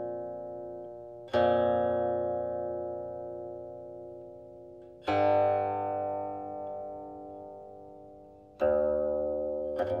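Slow guqin music: single plucked notes struck about every three to four seconds, each ringing on and slowly dying away. The note about five seconds in wavers as it fades, and a quick flurry of notes comes near the end.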